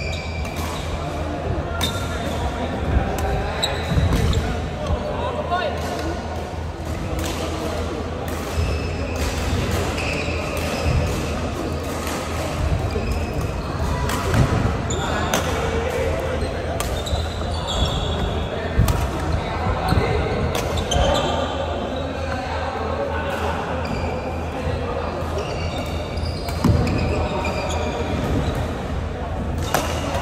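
Badminton rally in a large hall: rackets striking a shuttlecock with short, sharp hits scattered irregularly throughout, mixed with players' footwork on the wooden court. Voices in the background and a steady low hum sit underneath.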